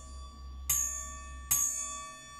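Small brass singing bowl struck with its wooden striker, ringing on with bright, high overtones; it is struck twice more, under a second apart, while the earlier strike is still ringing.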